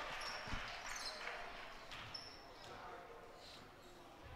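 Basketball gym sounds: a basketball bounces once on the hardwood court about half a second in, sneakers squeak briefly a couple of times, and a faint crowd murmur dies away.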